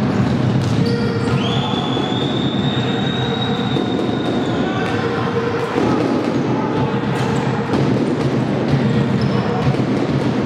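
Futsal play in a sports hall: the ball kicked and dribbled and players' shoes on the wooden court, over the hall's background noise. A long high squeal starts about a second and a half in and lasts some three seconds.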